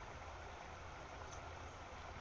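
Faint, steady outdoor background noise with a low rumble and no distinct event.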